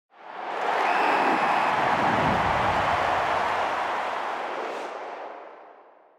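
Intro sound effect: a noisy rushing swell that rises quickly, holds for a few seconds and then fades away.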